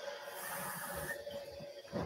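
Milk being poured into a bowl of pancake batter mix: a steady hissing pour for about a second, then tapering off, over a faint steady hum.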